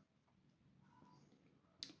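Near silence: room tone, with one faint short click just before the end.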